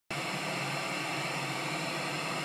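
Television static sound effect: a steady hiss of white noise with a faint low buzz in it, starting abruptly.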